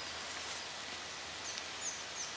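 Outdoor woodland ambience: a steady background hiss, with two short, faint, high chirps about one and a half seconds in.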